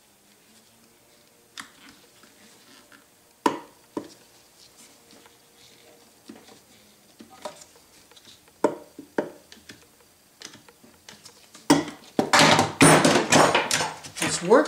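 IRWIN Quick-Grip bar clamps being set and tightened on an air pump's clutch pulley: scattered sharp clicks and knocks of plastic and metal. Near the end comes a fast run of loud ratcheting clicks as the clamp triggers are pumped to press down on the pulley.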